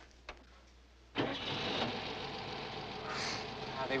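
Volkswagen Beetle's air-cooled flat-four engine starts suddenly about a second in and then runs steadily. The long-abandoned car fires up at once.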